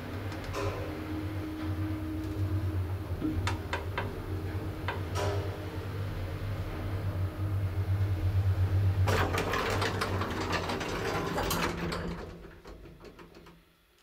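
1960 Schindler traction elevator running, a steady low hum with a few sharp clicks as the car travels. About nine seconds in, a louder, noisier stretch lasts about three seconds as the car stops at the floor, then the sound dies away.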